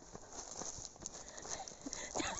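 Footsteps on a paved footpath while walking, a string of light, irregular knocks.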